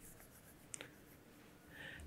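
Near silence with one faint click about three-quarters of a second in: a single key press on a computer keyboard.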